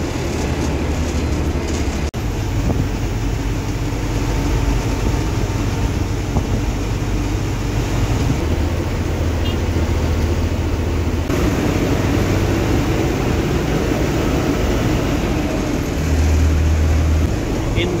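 Steady engine drone and road noise inside the cabin of a moving intercity bus, with a deep low rumble that grows louder near the end.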